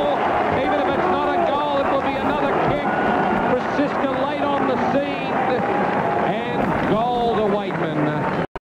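Radio commentators' voices overlapping one another over loud, steady stadium crowd noise just after a goal is kicked.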